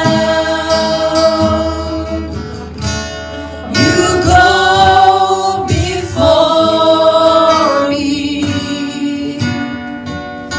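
Live worship singing: a female lead vocalist with backing singers holding long notes over strummed acoustic guitar.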